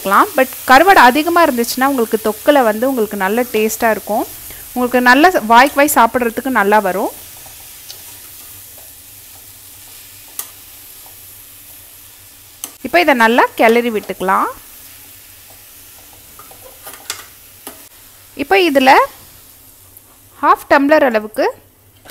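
Perforated metal ladle stirring and scraping dry prawn masala around a stainless steel kadai, in long strokes for the first several seconds and then in shorter bursts, with a low sizzle of frying between the strokes.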